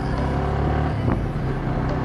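Yamaha sport motorcycle's engine running steadily under way as the bike picks up speed, shifting from third gear up to fourth partway through, with road and wind noise.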